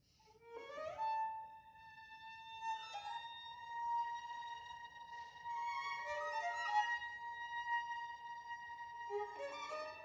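Contemporary chamber music for bowed strings begins about half a second in. Notes slide upward into long held high violin tones, and other sustained string notes enter beneath them, some sliding into pitch, with fresh lower notes gliding in near the end.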